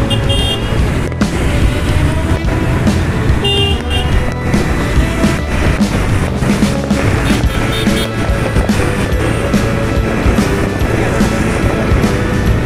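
Busy city road traffic heard from a moving vehicle: a steady, loud rumble of engines and road noise, with a short vehicle horn toot about three and a half seconds in. Music plays underneath.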